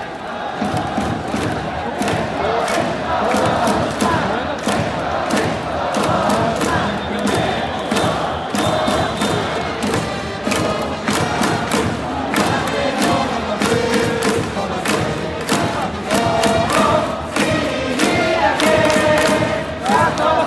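Japanese pro-baseball cheering section (ouendan) chanting a batter's cheer song in unison over a steady beat of claps and megaphone hits. From about halfway through, trumpets carry the melody.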